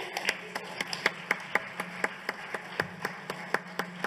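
Audience applause: a steady patter of many hands clapping, with single sharp claps standing out about four times a second.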